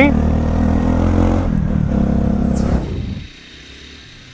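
Motorcycle engine running steadily, heard from the rider's onboard camera. About three seconds in it cuts off abruptly, and only a much fainter engine hum remains.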